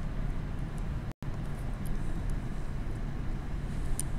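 Steady low background rumble of the room, with a few faint ticks; the sound cuts out completely for a split second about a second in.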